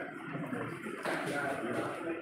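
Men talking in conversation, close by in a room.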